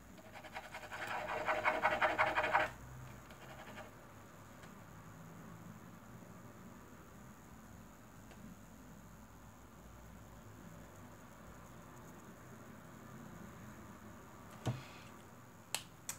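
A pen scratching rapidly back and forth on paper for about two and a half seconds, then faint quiet strokes, and two sharp clicks near the end.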